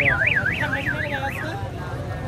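A siren-like warbling tone, sweeping up and down about four times a second for about a second and a half, then cutting off, over crowd noise.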